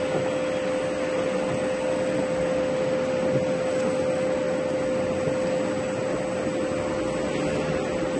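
Vacuum pump running steadily with one constant humming tone, drawing the air out of a container of carrots being vacuum-treated for pickling.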